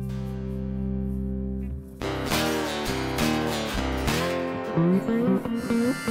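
A live Americana rock band playing. A sustained chord drones steadily, then about two seconds in guitars come in strumming and picking, with a lead line sliding between notes.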